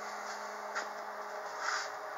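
Quiet workshop background: a steady low hum that cuts off about one and a half seconds in, with a faint click near the middle.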